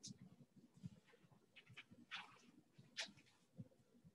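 Near silence, broken by faint, short scratching strokes of writing as an equation is written out.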